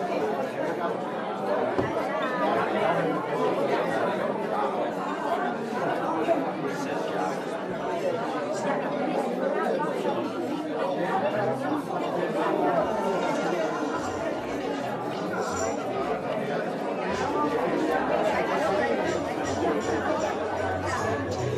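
Many people talking at once: the overlapping chatter of a party crowd in a hall, with no single voice standing out.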